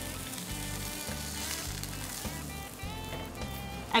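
Soft sizzling of a pan-fried fish in a hot frying pan as it is lifted out with a spatula, over background music with a low repeating bass line.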